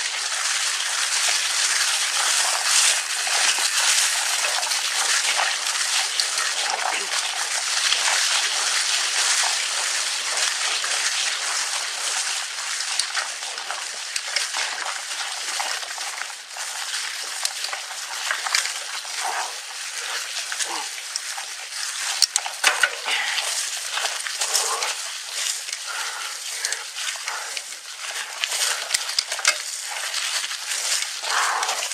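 Mountain bike tyres rolling fast over a trail carpeted in dry fallen leaves: a steady crackling rustle with scattered sharp clicks, a cluster of louder ones about two-thirds of the way through.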